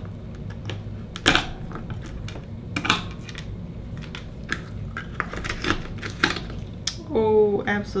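Steel oyster knife prying open an Akoya oyster and scraping inside the shell: an irregular run of sharp clicks, taps and short scrapes of metal on shell, the sharpest snaps about a second and a half and three seconds in.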